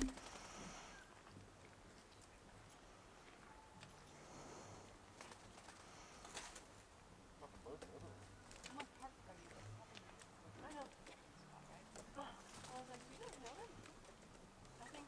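Near silence: quiet outdoor background with a click at the start and faint, brief scattered sounds in the second half.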